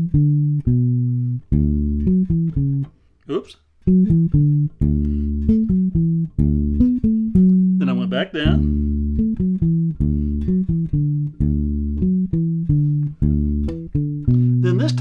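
Electric bass guitar played fingerstyle, unaccompanied: a pentatonic fill moving up the neck as a string of separate, sustained single notes, with a short break about three seconds in.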